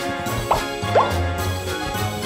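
Animated-logo intro music for a children's cartoon, with two short rising-pitch sound effects about half a second apart near the start.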